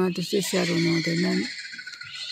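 A person's voice making a run of short, quick syllables at a steady pitch, stopping about a second and a half in.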